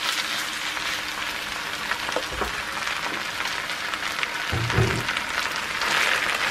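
Grated raw potato sizzling and crackling as it lands in a hot frying pan of bacon and onions and is pushed around with a wooden spatula, under quiet background music.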